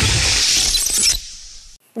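Transition sting under an animated channel logo: a dense, glassy, crash-like sound effect that cuts off about a second in and fades out quickly.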